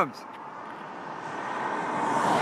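A vehicle approaching on the highway, its road and engine noise rising steadily.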